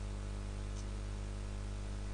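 Steady electrical hum with a low buzz and an even hiss, unchanging throughout: mains hum and line noise in the sound feed.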